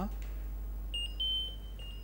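High-pitched electronic beeping from a Bosch ALI route-guidance receiver, starting about a second in as a string of short and longer bleeps at two close pitches. It is the data signal picked up as the car aerial passes over the roadside transmitter wire. A steady low mains hum runs underneath.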